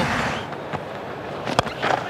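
Stadium crowd noise, then the single sharp crack of a cricket bat striking the ball about a second and a half in.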